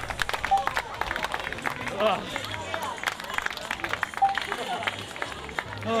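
Scattered hand clapping from a crowd of spectators, mixed with crowd voices.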